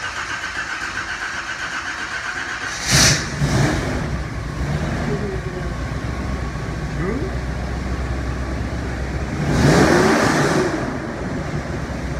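A 1978 Chevy Nova's 350 small-block V8 is cranked on its mini starter and catches about three seconds in with a loud burst. It then settles into a steady, deep idle and is revved once near ten seconds in.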